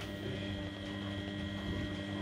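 Front-loading washing machine running, its motor humming steadily as the drum turns the wash.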